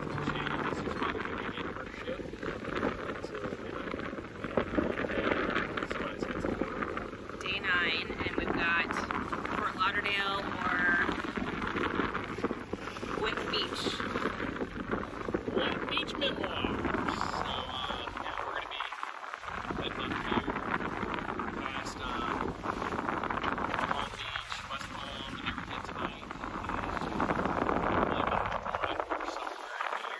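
A man and a woman talking over a steady rushing of wind on the microphone.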